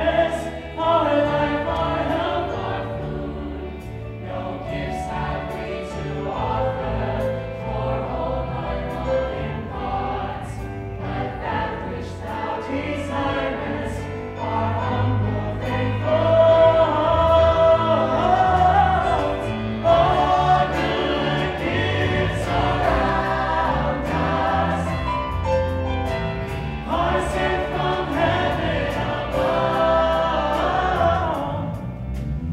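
A male soloist singing a musical-theatre song, with other cast voices joining in as a chorus and a live band accompanying.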